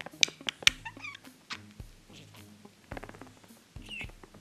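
Green budgerigar chattering in short sharp clicks and quick chirps, thickest in the first second, over soft background music.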